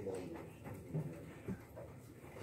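Quiet background of a classroom at work: a faint murmur of voices and small movements, with a couple of short knocks about a second in.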